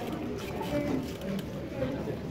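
Indistinct background chatter: several people talking at a steady level in a large hall.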